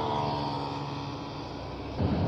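Motorcycle engine running at low speed, its tone drifting slightly lower and slowly fading as it eases off.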